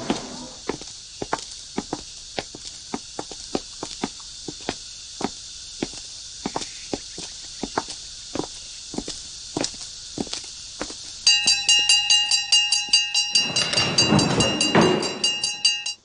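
Footsteps of two people walking on a hard corridor floor, about two steps a second. About eleven seconds in, a loud bell starts ringing rapidly and keeps on, with a burst of shuffling noise under it near the end.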